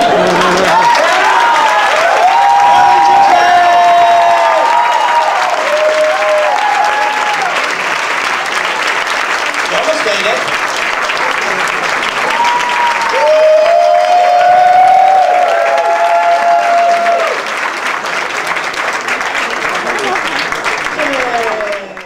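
Audience applauding and cheering, with many voices whooping and shouting over the clapping. The cheering swells again about thirteen seconds in.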